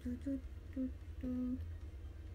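A young woman humming a tune with her mouth closed: a string of short, steady notes in a low voice, with one longer held note past the middle.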